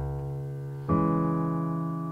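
Piano with a sampled piano sound: a low C-sharp bass note rings, then a C-sharp minor chord is struck about a second in. Both ring on under the sustain pedal and slowly fade.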